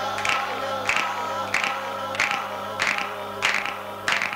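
Experimental analog electronic music from self-built instruments: steady held tones and a low drone, with a hissy percussive hit repeating about every 0.6 seconds.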